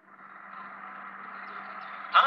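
Steady hiss with a faint low hum from the played-back story recording, fading in over the first half-second before the next line of dialogue.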